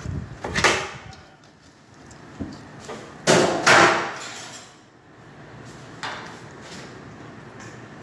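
Kitchen utensil clatter: a wooden spoon scraping and knocking roasted tomatoes off baking paper into a stainless steel bowl, in a few separate knocks. The loudest is a pair of sharp knocks about three and a half seconds in.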